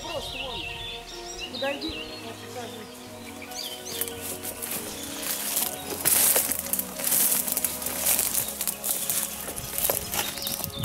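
Rustling and brushing through leafy forest undergrowth in repeated noisy bursts that grow louder in the second half, with birds singing in the first seconds.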